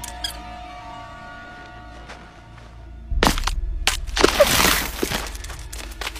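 Film soundtrack: quiet orchestral score, then about three seconds in a sudden loud hit followed by a loud rushing, crashing sound effect for a second or two.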